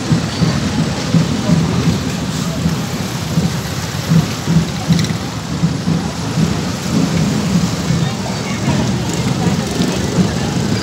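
Loud, steady low rumble of outdoor street noise with no distinct events, its level wavering unevenly.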